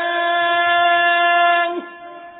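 A muezzin's voice holding one long, steady sung note of the adhan (Islamic call to prayer), which slides briefly down in pitch and ends near the end.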